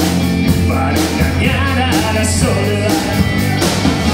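A live rock trio playing loudly: electric guitar, electric bass and drum kit, with cymbal crashes on the beats.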